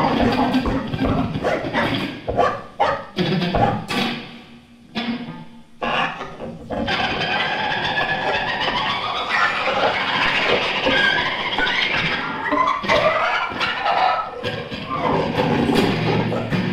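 Free-improvised noise music from an amplified wooden board, electronics and electric guitar. A run of sharp knocks fills the first four seconds and dips briefly around five seconds. From about seven seconds a dense, sustained noise texture takes over, with wavering high tones in the middle.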